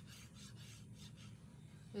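Faint, repeated rubbing and scraping of paper and card as a small paper piece is handled and glue is put on it with a fine-nozzle glue bottle.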